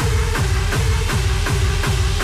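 Hard dance music from a continuous DJ mix: a fast kick drum on every beat, about three a second, each kick's boom falling in pitch, under a held synth note that steps down in pitch about half a second in.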